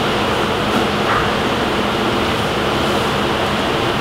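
Steady rushing air noise with a faint low hum from an electric drum fan running.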